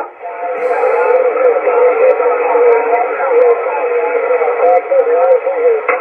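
Upper-sideband voice signals on the 10-metre amateur band from a Yaesu all-mode transceiver's speaker, with several voices overlapping into a continuous garbled babble in which no words come through.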